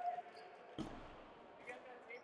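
Quiet gym room tone with a single thud about a second in: a ball bouncing once on the hardwood gym floor.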